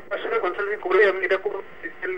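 A man talking: speech only, with a short pause near the end.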